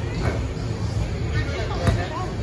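Background crowd chatter, with a basketball bouncing once on the court near the end as a sharp thump.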